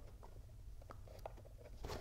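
Faint handling of cardstock: a few scattered small clicks and light rustles as a paper piece is lined up against a paper box.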